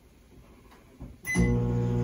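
Microwave oven being started: a click and a short high keypad beep about a second in, then the steady hum of the oven running.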